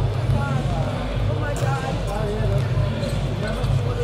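Basketball arena ambience during warmups: balls bouncing on the court and echoing through the large hall, over a steady low rumble and voices.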